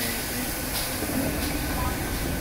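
GWR pannier tank steam locomotive running past, giving a steady, even noise of engine and wheels, with a man's voice briefly over it.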